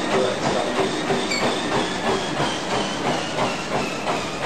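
Motorized treadmill belt running at high speed under a runner's rhythmic footfalls, a steady run of thuds at maximum running pace.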